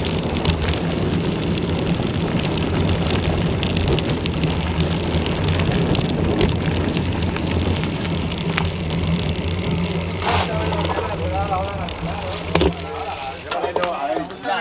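Wind rushing over the microphone of a bike-mounted action camera, with mountain-bike tyres rolling on gravel at speed. The noise eases near the end as the bike slows to a stop, and there is a single sharp knock shortly before it stops.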